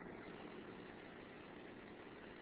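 Near silence: faint, steady room tone and recording hiss.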